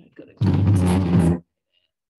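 A loud, harsh burst of a person's voice, about a second long, much louder than the talk around it, as from an unmuted call participant's microphone.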